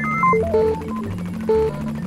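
Synthesizer background music with a stepping bass line and short melodic notes, a louder note sounding about once a second.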